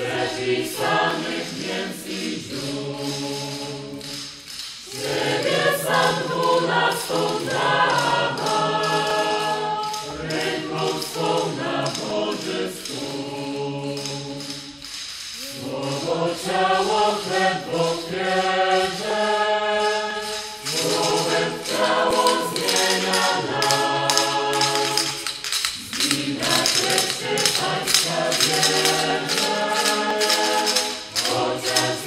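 A hymn sung by many voices, in phrases of held notes a few seconds long with short breaks between them. Over the second half a rapid, dense clatter runs alongside the singing.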